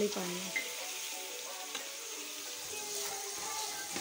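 Sliced onions and chopped tomatoes sizzling in hot oil in a steel pan as they are stirred with a metal spoon, a steady frying hiss.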